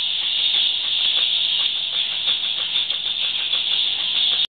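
Steady high-pitched hiss of the recording's background noise, with faint, irregular light clicks scattered through it.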